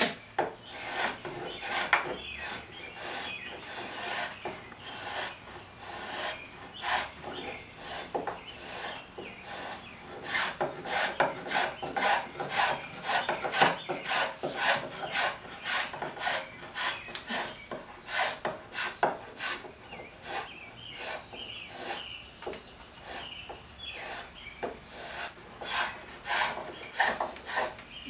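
A small heel shave (a shoemaker's tool) cutting across the wooden seat blank in quick repeated strokes, about two a second, each stroke a short scraping shave lifting curls from the wood.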